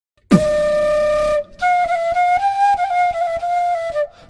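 Flute played beatbox-style into a microphone. A single held note starts about a third of a second in and breaks off at about a second and a half, then a melody of held notes stepping slightly up and back down follows, with soft, short beatboxed pulses under it.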